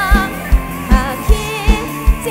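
Live Thai Isan pop band music with a woman singing a held, wavering vocal line over a steady kick drum beat, about two and a half beats a second.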